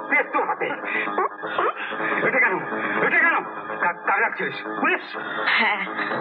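A film song: a singing voice with gliding, wavering notes over steady instrumental accompaniment.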